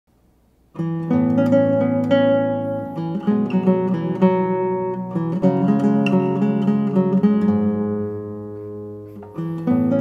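Kohno Sakurai Special nylon-string classical guitar played fingerstyle, bass notes under a plucked melody and chords. It starts just under a second in, rings down on a held chord around eight to nine seconds, and picks up again just before the end.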